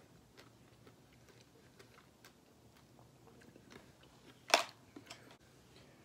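A person chewing soft yellow dragon fruit close to the microphone, with faint wet mouth clicks. One louder, sharp sound comes about four and a half seconds in.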